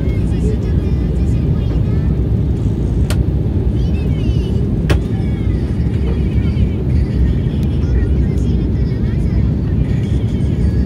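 Steady cabin noise inside an Embraer 190 airliner on approach: a loud, even low rumble of turbofan engines and airflow. Two short sharp clicks come about three and five seconds in.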